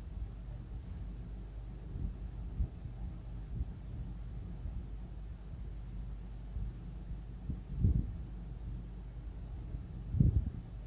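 Steady low hum of room noise, with a few soft knocks from the drawing hand and pencil against the table: a couple about two seconds in and the loudest about eight seconds in.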